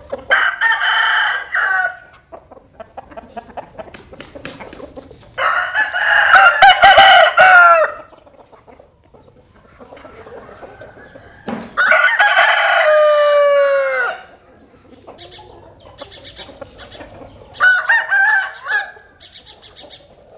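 Roosters crowing: four long crows, one near the start, one around a quarter of the way in, one past the middle that falls in pitch at its end, and a shorter one near the end. Faint clucks and small sounds come between the crows.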